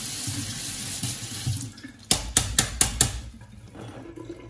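Kitchen tap running steadily for about two seconds, then a quick run of about six sharp clinks and knocks from things being handled.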